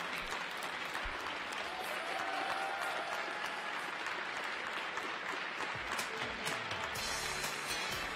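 Arena audience applauding, a steady patter of many hands clapping.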